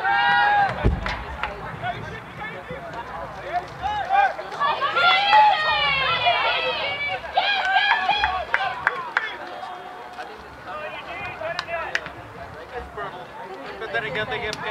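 Voices shouting and calling out at a soccer match, loud and high-pitched, rising and falling and strongest around the middle, with a single thump about a second in.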